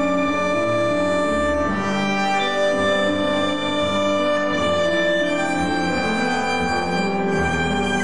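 Tango quartet playing: violin bowing long held notes over bandoneon, piano and double bass.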